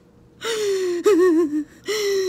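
A woman's exaggerated mock crying. A loud, high, drawn-out wail sags slightly in pitch, then breaks into a wavering, sobbing quaver. A second wail starts near the end.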